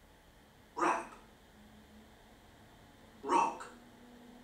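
A voice saying two short single words, one about a second in and one about three and a half seconds in, with quiet pauses between them: vocabulary words read out one at a time for the listener to repeat.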